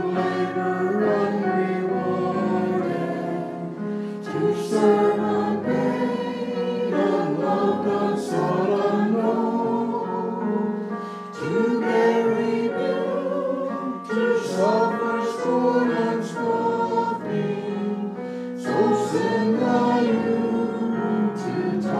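A choir singing a hymn-like piece, many voices holding long notes together.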